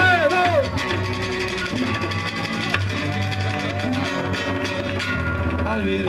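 Live band music from acoustic guitars and drums: a sung line ends just after the start, then the band plays on without singing.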